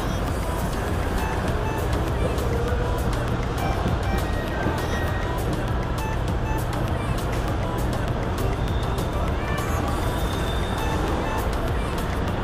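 Background music at a steady level, with indistinct voices and a steady low hum beneath it.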